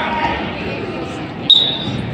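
A referee's whistle blown once, briefly, about one and a half seconds in: the signal to start wrestling.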